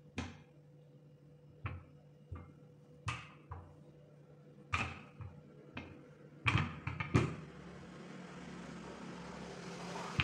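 A rolling pin knocking against the mat and wooden table while it rolls out and presses a sheet of dough, about a dozen sharp knocks at uneven intervals. A steady hiss comes in about seven seconds in, and a few more knocks follow near the end as the pin is moved aside.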